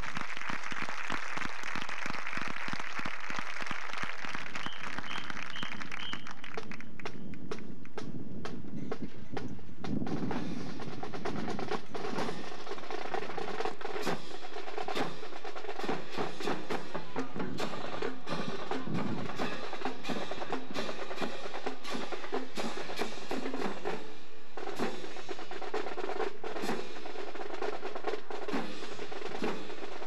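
Marching band playing: the winds hold a sustained chord for the first several seconds, then the drumline and front-ensemble percussion take over with rapid drum strokes and rolls over held pitched tones.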